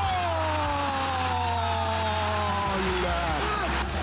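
A football commentator's long, drawn-out goal cry: one held call falling steadily in pitch for about three and a half seconds, over background music.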